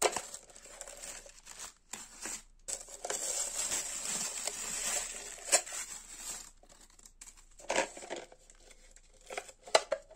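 Crinkling, rustling plastic wrap and protective film being handled around a clear plastic water tank. A longer rustle runs for a few seconds in the middle, with a few sharp plastic clicks and knocks later on.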